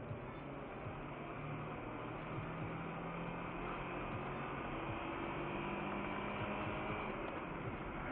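Steady engine and road noise of a car heard from inside the cabin: a low hum over even tyre noise, growing slightly louder.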